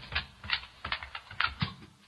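Sampled recording of a dog walking, played back from one sampler key over loudspeakers: a quick, uneven run of light footfall taps that grows fainter toward the end.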